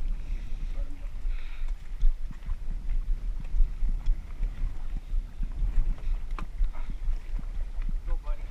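Gusty low rumble of wind buffeting the microphone on an open fishing boat, with a few sharp clicks and knocks.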